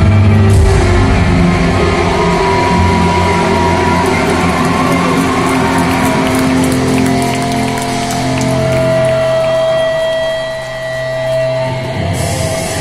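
Live rock band playing loud through an arena PA, heard from high in the stands with the hall's echo. A long held note sustains through the second half.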